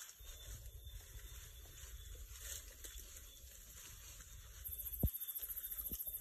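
Faint outdoor night ambience in the bush: a low rumble throughout, one soft knock about five seconds in, and a fast, even, high-pitched pulsing that starts shortly before it.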